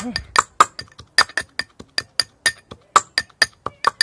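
Metal pestle pounding coriander leaves in a small metal mortar: a rapid run of ringing metallic clinks, about five strikes a second, as the leaves are crushed fine.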